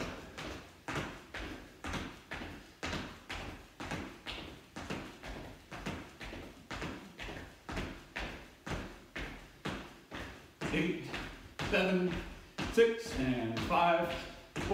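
Feet landing on a wooden floor during jumping jacks: a steady run of thuds, about two a second. A voice comes in near the end.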